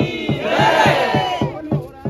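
A crowd of devotees raising a loud collective shout that swells and fades within about a second. Under it runs a fast, steady drum beat of about six strokes a second.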